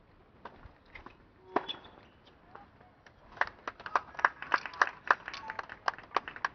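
Small crowd of tennis spectators clapping at the end of a point: a few single sharp claps or knocks at first, then scattered applause with separate claps that picks up about three seconds in.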